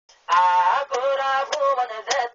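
A man singing a Rohingya tarana, with long held notes that bend in pitch, over sharp percussive ticks about every 0.6 seconds.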